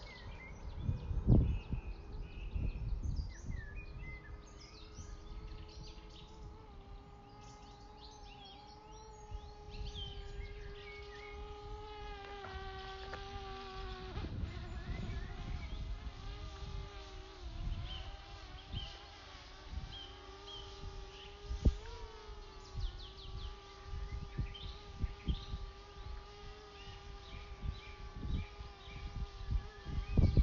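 DJI Mavic Air drone's propellers buzzing in flight: a steady, insect-like whine that comes in a few seconds in and shifts in pitch now and then as the drone manoeuvres, with a brief rise in pitch past the middle.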